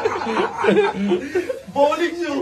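Men laughing and chuckling, the laughter coming in short broken bursts.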